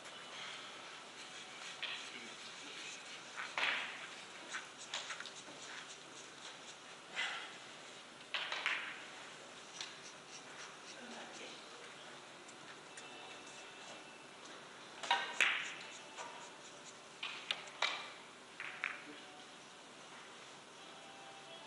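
Billiard hall ambience: a dozen or so scattered sharp clicks and knocks over low room noise and faint murmur. The clicks are typical of balls and cues striking on neighbouring tables, and the loudest come in a cluster about fifteen seconds in.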